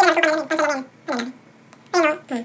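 A man's voice speaking in short phrases with brief pauses between them.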